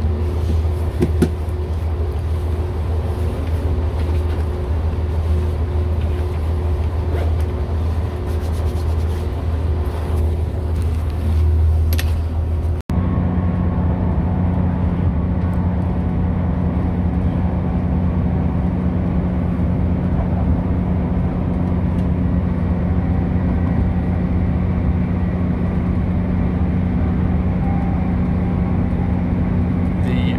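Running noise inside a Northern Class 170 Turbostar diesel multiple unit on the move: a deep, steady rumble with a few clicks. About a third of the way in an abrupt cut brings in a steadier, slightly higher engine and transmission drone.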